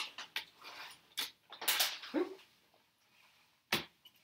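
A plastic quilting ruler and a paper foundation being handled on a cutting mat: a few short rustles and taps, with one sharp tap near the end.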